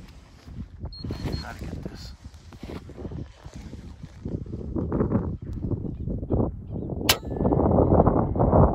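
Wind rumbling on the microphone, then one sharp crack about seven seconds in: an FX Impact M3 air rifle firing a slug at a prairie dog about 305 yards away.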